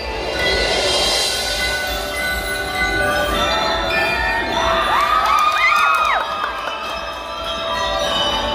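Glockenspiels (bell lyres) ringing out a tune in a large hall while a crowd cheers and children shout over it; the cheering swells about a second in, and whooping shouts are loudest about five to six seconds in.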